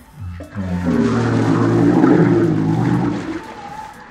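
A man retching and vomiting into a plastic-lined trash can after chugging a gallon of milk: one long, loud, strained heave lasting about three seconds, with liquid gushing out.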